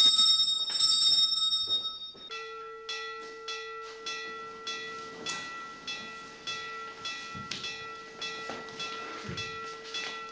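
A wake-up bell ringing. For about the first two seconds it is a loud, continuous high ring, then it cuts to a lower bell that pulses about twice a second with a sustained ring.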